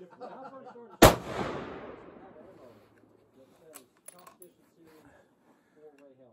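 A single loud rifle shot from a Tikka T3x TAC A1 in 6.5 Creedmoor about a second in, its echo dying away over about two seconds. A few light clicks follow a few seconds later.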